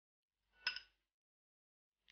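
A single short clink of a metal spoon against a dish about two-thirds of a second in, with a brief ring; otherwise near silence.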